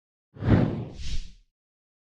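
Whoosh sound effect for an animated logo intro: a low rushing swoosh that runs straight into a second, higher, hissier swish, the whole over in about a second.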